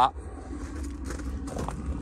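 Light footsteps and small knocks of someone walking outdoors, over a low steady rumble.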